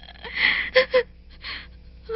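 A woman sobbing: a sharp gasping breath, then two short broken cries and another ragged breath.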